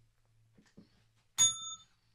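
A single sharp ding about one and a half seconds in: a bright, bell-like chime of several clear tones that cuts off after less than half a second. Otherwise quiet room tone with a faint low hum.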